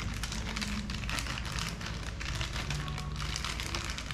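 Clear plastic packaging crinkling and rustling in the hands as a small part is unwrapped: a dense, continuous run of small crackles.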